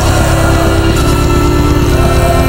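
Post-black metal music: a dense wall of distorted guitar chords held over a very fast, even drum pulse.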